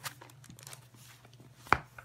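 Hands handling a pen and an open Bible on a wooden table: a few soft taps and clicks, then one sharp knock near the end, the loudest sound.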